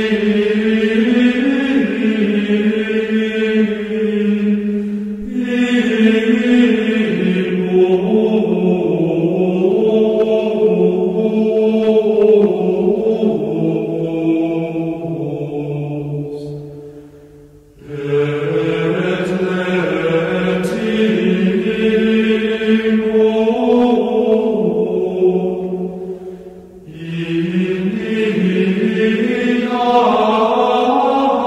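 Devotional chanting in long, slowly moving sung phrases, with short breaks about 5, 17 and 27 seconds in.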